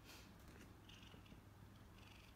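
Faint, steady purring of an Oriental cat.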